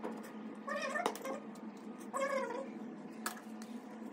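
A cat meowing twice, each meow short and rising then falling in pitch, the first about a second in and the second a little after two seconds. A sharp click follows near the end, over a steady low hum.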